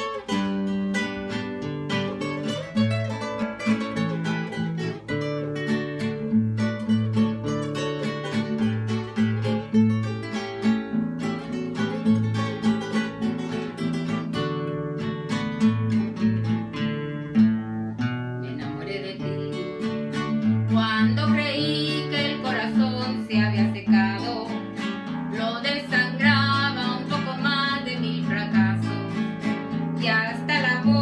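Requinto guitar picking the melodic lead over a twelve-string acoustic guitar's strummed accompaniment in a ranchera rhythm. Singing voices join about two-thirds of the way through.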